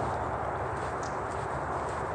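Dry bracken fronds rustling steadily as they are handled.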